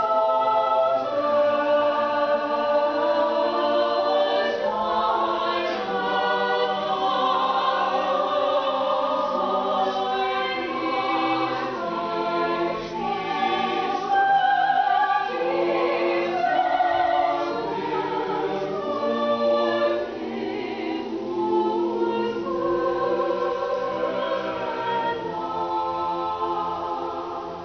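Mixed-voice madrigal ensemble singing in parts, unaccompanied, with layered voices holding sustained chords and moving together from note to note.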